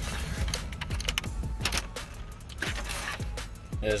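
Background music with scattered clicks and rattles of plastic dash trim and wiring-harness connectors being handled.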